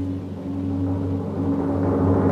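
Deep, sustained timpani rumble in intro music, dipping just under half a second in and then swelling again.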